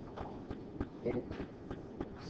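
Quiet classroom: a few scattered light clicks and knocks, with a brief faint murmur of students' voices about a second in.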